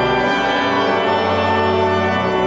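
Church organ playing slow, held chords.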